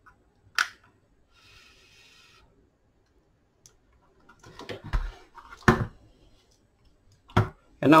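Small clicks and knocks of a drill's brushless motor and its wires being handled on a workbench: one sharp click, a brief soft hiss, then a run of light knocks and a last knock just before speech starts.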